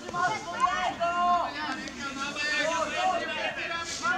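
Young footballers shouting and calling to one another on the pitch, several high-pitched voices overlapping.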